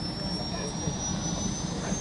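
The three Zenoah 38 two-stroke petrol engines of a large-scale model aircraft are heard as a steady low drone as the model comes in to land. A thin high whine rises slowly in pitch over it.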